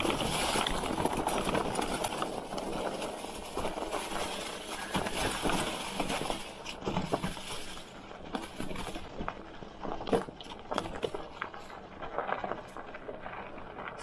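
Fat 4-inch tyres of an electric bike rolling over a carpet of dry fallen leaves, crunching and rustling. The rustle is dense for the first half or so, then thins out to scattered clicks and knocks over rougher ground.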